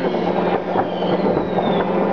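New Year's fireworks and firecrackers banging and crackling in quick succession, over the steady low note of ships' horns sounding from the harbour.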